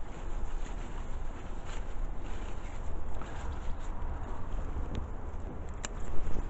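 Wind buffeting the microphone in an uneven low rumble, with faint rustling of large lime leaves as a hand works through the foliage, and one sharp click near the end.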